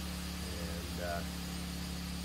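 Compact tractor's engine idling with a steady low hum.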